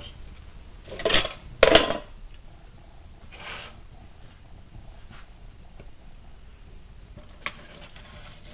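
Flames from an old Vulcan Safety Chef fuel canister burning out of control with a faint steady rushing. Two short clatters come about a second in, half a second apart.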